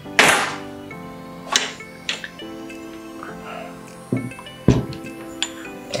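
Soft background music, under which an aluminium video tripod slides out of its nylon carry bag with a brief swish at the start. A few light clicks follow, then two dull thuds about four to five seconds in as the tripod is set down on a wooden table.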